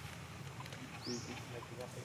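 Outdoor ambience of distant people talking, with one short, high, rising call about a second in.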